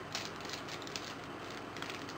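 Clear plastic bags of mohair doll hair crinkling in the hands, a string of short crackles.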